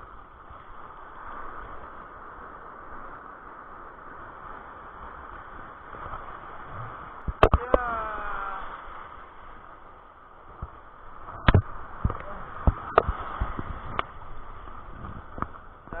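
Surf washing and foaming around a wading angler: a steady rush of breaking water. Sharp knocks cut through it, a cluster about seven seconds in and several more in the second half.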